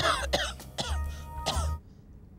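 A man giving a few short, deliberate coughs into his fist, a put-on cough to cover a glance down at a watch, over quiet background music; the coughing stops shortly before the end.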